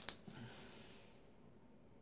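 A brief sharp click, then a breath out that fades away over about a second.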